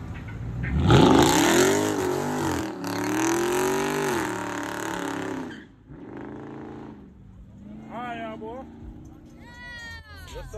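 Dodge Charger revving hard as it spins its tyres pulling away, starting about a second in. The engine pitch climbs and falls with tyre hiss over it, then stops suddenly after about five seconds. A second, quieter rev follows.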